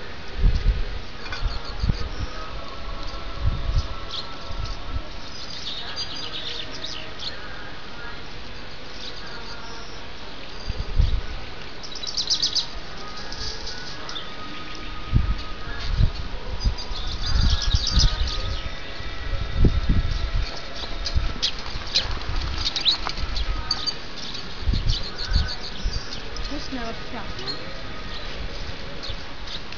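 Small birds chirping and singing in repeated clusters of short, high notes, over intermittent low rumbling.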